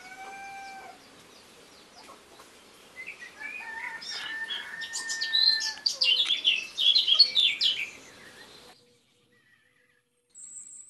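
Domestic chickens calling: one short pitched call at the start, then louder, busier squawking and clucking from about three seconds in that cuts off suddenly near the end.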